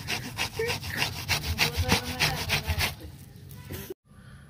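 Ripe palmyra palm fruit pulp being scraped against a stainless steel box grater, in quick rasping strokes about five a second. The strokes stop about three seconds in.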